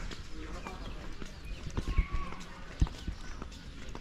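Quiet outdoor background with a few irregular low thumps from a person walking with the camera, the strongest about two seconds in and again just before three seconds.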